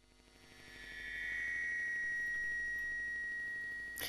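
Opening of a screened documentary clip's soundtrack: a single steady high tone over a low hum. It fades in over the first second, holds, and cuts off abruptly at the end.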